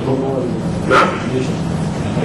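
Speech: a man says one short questioning word about a second in, over a steady low hum.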